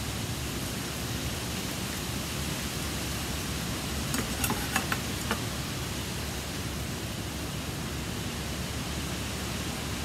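Steady hiss, with a few light clicks about four to five seconds in from a knife cutting a smoked beef short rib on a wooden cutting board.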